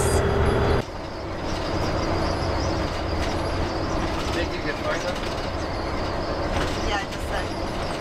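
Converted school bus driving on a highway, heard from inside the cab: a steady engine drone and road noise. The sound changes abruptly about a second in and then stays even.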